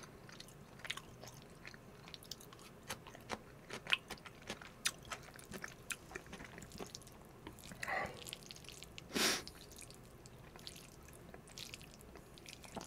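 Close-miked chewing of a pickle slice: soft, scattered small crunches and wet mouth clicks. About nine seconds in comes one brief, louder noise.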